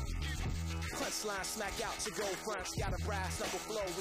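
Hip hop music with a heavy bass beat and a rapping voice.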